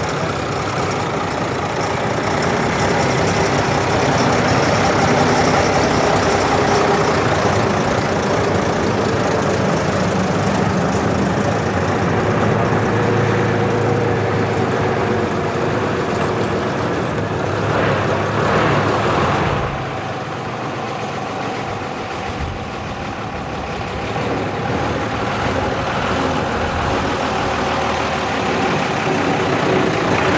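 Vintage Maudslay diesel lorry engines running steadily as the lorries move slowly at low speed. About two-thirds of the way through there is a brief rushing hiss, after which the engine sound drops for a few seconds.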